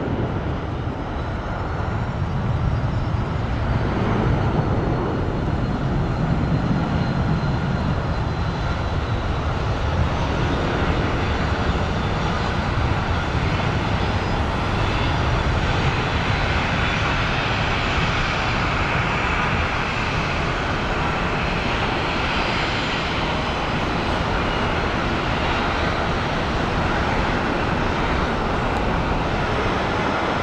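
Twin jet engines of an Airbus A330-200 at takeoff thrust, a continuous roar heard from the ground. The deep rumble is heaviest in the first several seconds, with a faint high whine, and the sound turns more even as the jet climbs away.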